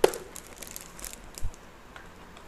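Clear plastic storage organizer being unpacked from its plastic wrap: a sharp plastic click at the start, then light ticks and crinkles, and a dull thump about one and a half seconds in.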